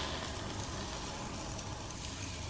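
Granular clumping cat litter sifting slowly through the slots of a plastic litter scoop held over the litter box: a steady, soft hiss of trickling granules.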